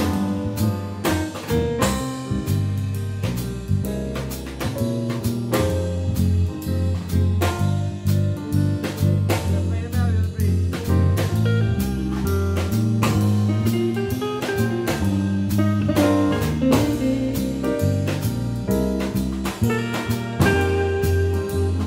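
Small jazz combo playing live: grand piano, electric guitar, electric bass and drum kit. Bass notes move along steadily under the piano and guitar, with frequent drum and cymbal strokes.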